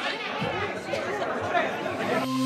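Several people talking over one another: indistinct crowd chatter with no clear words.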